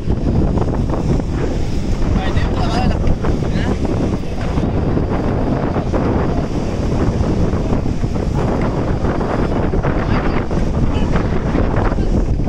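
Wind buffeting the microphone in a loud, steady rumble, with waves breaking on the shore beneath it.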